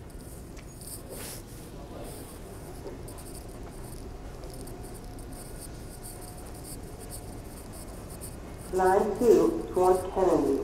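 Steady background noise of a subway platform with a train standing at it. Near the end a much louder pitched sound starts, its tones stepping up and down and then falling away.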